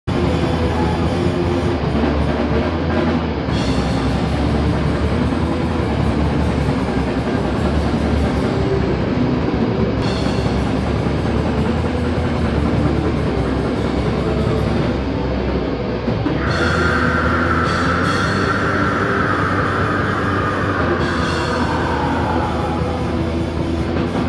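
Heavy metal band playing live at full volume: distorted electric guitars over a drum kit. From about two-thirds of the way in, a high held note slowly slides downward.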